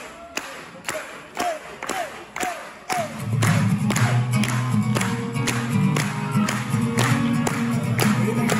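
Live music: a steady beat of sharp hits, about two a second. About three seconds in, an acoustic guitar comes in over it, strumming full low chords, and the music gets louder.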